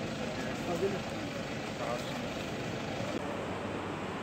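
Steady outdoor background noise, a hiss of street sound, with faint indistinct voices.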